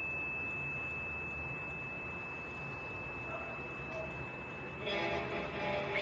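A steady, thin high-pitched tone held throughout over a faint low hum, with a brief fuller sound with several pitches near the end.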